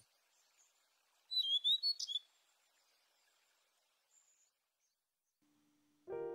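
A small bird chirping: one quick run of short, high chirps about a second in, lasting less than a second.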